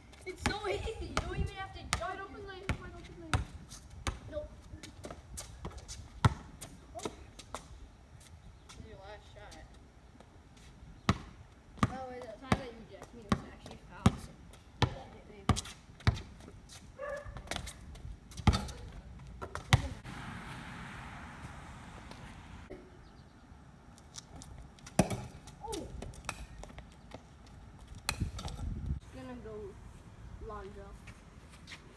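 Basketball bouncing on a concrete driveway: dribbling, with a steady run of bounces about two a second in the middle and other scattered thuds of the ball.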